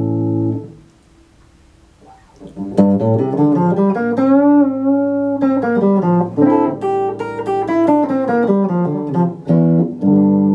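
Yamaha RS320 electric guitar played through a Line 6 Spider V60 amplifier. A ringing chord is cut off about half a second in, and after a short pause a lead line of single notes follows, with a string bend a couple of seconds into it. A new chord is struck right at the end.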